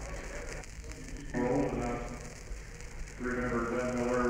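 A man speaking to an audience in short, drawn-out phrases with quieter pauses between them, over a faint crackle and hiss from the record's surface.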